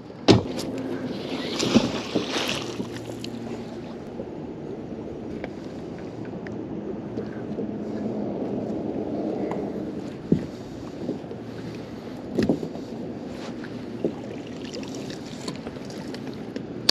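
Magnet-fishing rope being hauled in hand over hand from a small boat, with water moving along the hull and a few sharp knocks against the boat.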